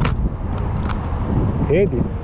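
Wind buffeting the microphone in a steady low rumble, with a sharp click at the very start and a brief voice sound near the end.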